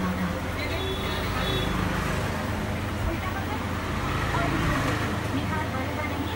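Steady low rumble of road traffic, with people talking in the background.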